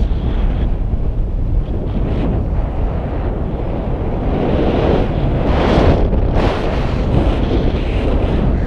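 Airflow buffeting an action camera's microphone in paraglider flight: a loud, steady low rumble that swells for a few seconds past the middle.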